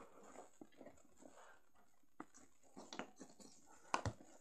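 Faint taps and clicks of small plastic toy figures handled on a wooden tabletop, with a sharper click near the end.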